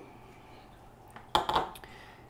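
A short clatter of hard plastic about one and a half seconds in, a sharp knock followed by a few lighter clicks, as a length of 3/4-inch PVC fill pipe is set down.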